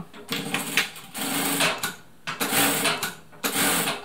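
Siruba DL7200 industrial needle feed lockstitch sewing machine sewing in about four short bursts, stopping and starting again between them.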